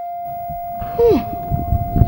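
Background film score holding one sustained, bell-like note, with a short falling vocal sound about a second in and a low rumbling noise in the second half.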